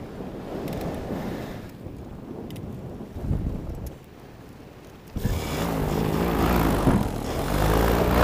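Two-stroke paramotor engine restarted in flight with its pull starter: wind noise while gliding with the engine off, then about five seconds in the engine catches suddenly and runs, getting louder toward the end.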